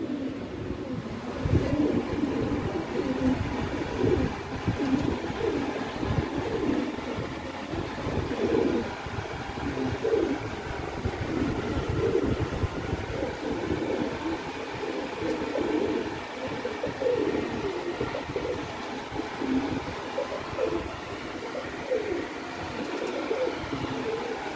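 Domestic pigeons cooing continuously, several birds overlapping, over a low rumble.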